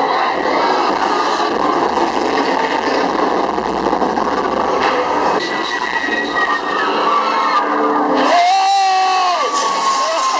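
Loud din inside a haunted-house attraction: a dense, even noise, with high wailing tones that hold and then slide down, the strongest starting about eight seconds in.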